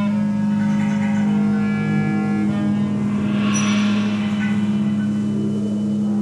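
Live ensemble music on tenor saxophone, clarinet and upright bass: a steady low drone runs under long held notes. About halfway through, a hissing swell of noise rises and fades over the drone.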